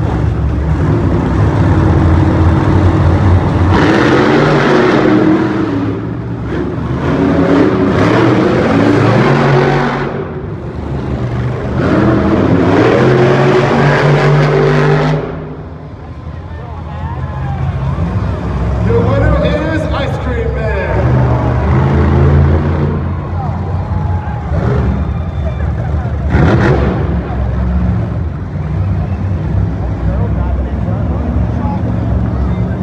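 Monster truck engines revving hard and racing, loud and rising and falling in pitch. They ease off briefly about halfway through, then rev up again.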